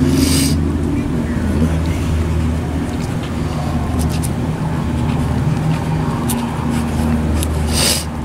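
A steady low engine drone, a motor running nearby without letting up, with a brief hiss about a quarter second in and again just before the end.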